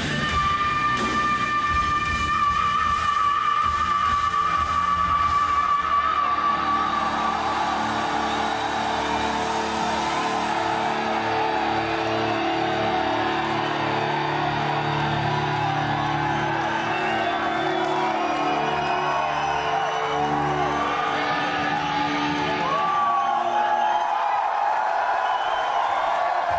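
Live heavy metal band ending a song: a long held high note over the band for about ten seconds, then a sustained chord ringing out while the crowd cheers and whoops. The music stops near the end and the cheering carries on.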